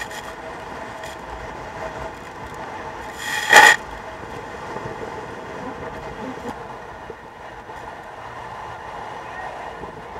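Water rushing and spraying along the hull of a Volvo Ocean 65 racing yacht sailing fast through rough sea in strong wind, a steady noisy rush. A loud, short burst comes about three and a half seconds in.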